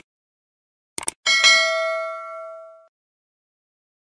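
Subscribe-button animation sound effects: a quick double mouse click about a second in, then a bright bell ding that rings out and fades over about a second and a half.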